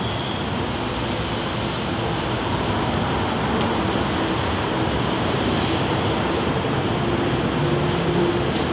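Steady roar of city street traffic, growing slightly louder toward the end.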